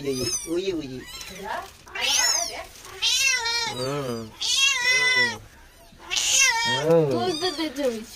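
Mother cat meowing over her newborn kittens: a string of drawn-out calls that rise and fall in pitch, some high and some lower, coming in about six bouts with short pauses between them.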